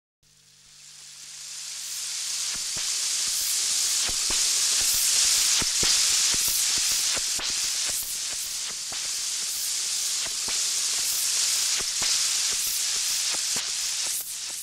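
Intro of a drum and bass track: a crackling hiss like record surface noise fades in over about two seconds, with scattered clicks and pops, a faint low hum, and soft high swishes recurring at an even pace.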